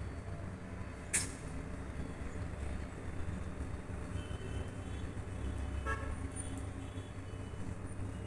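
Steady low background rumble, with a brief sharp high noise about a second in and a short toot, like a distant horn, near six seconds.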